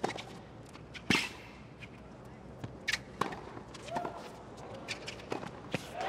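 Tennis rally on a hard court: a tennis ball struck by rackets and bouncing, a sharp hit every second or two, the loudest about a second in.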